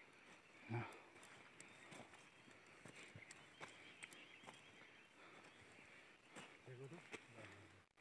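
Near silence: faint outdoor background with a few scattered soft clicks, and brief faint murmured voice sounds about a second in and again near the end.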